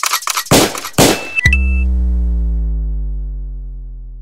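DJ jingle sound effects: a fast run of short effect hits, then about one and a half seconds in a single heavy hit with a deep bass note that rings on and slowly fades.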